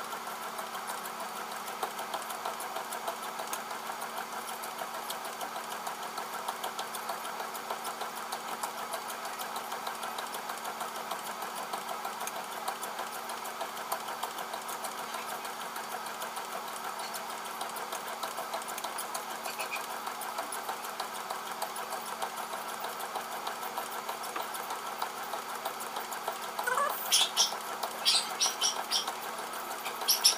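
Motorised treadmill running with a walker on it: a steady motor hum and belt noise with fast, light ticking. A few short high squeaks come near the end.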